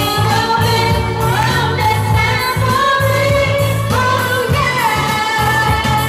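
A woman singing karaoke into a corded microphone through the speakers, over a backing track with a steady bass beat; she holds long notes that slide in pitch.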